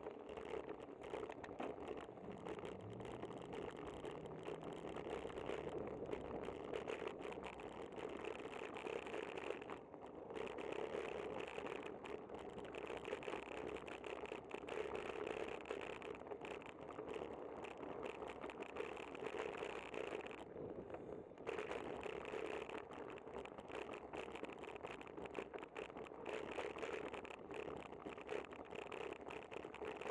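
Bicycle rolling over rough, cracked asphalt, heard through a bike-mounted camera: steady road noise with a continuous clicking rattle, easing briefly twice, about ten seconds in and again around twenty-one seconds.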